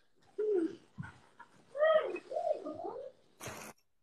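Soft wordless vocal sounds, a person humming or cooing in short pitched phrases. Near the end there is a brief plastic crinkle as a bag of flour tortillas is opened.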